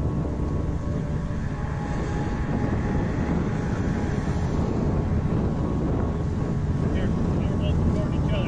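Outdoor roadside noise: a steady low rumble of wind on the microphone mixed with vehicle noise. It starts abruptly as the music cuts off.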